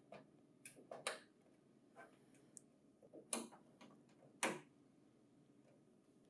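Faint, separate clicks and taps of a cable connector and its plastic housing being handled and plugged into a printer finisher's rear socket, about five small ticks spread unevenly, the loudest near the middle and about three-quarters of the way in.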